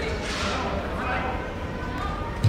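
Indistinct voices of players calling out during an indoor soccer game, over the steady low rumble of a large hall, with a brief hiss about half a second in.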